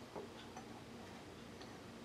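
A few faint, irregularly spaced light clinks of a teaspoon against a china teacup, over quiet room tone, with the clearest one just after the start.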